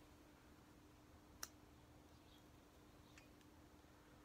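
Near silence, broken by a single sharp click about one and a half seconds in and a much fainter click a little after three seconds.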